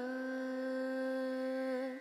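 Background music: a voice holds one long, steady hummed note, which fades out near the end.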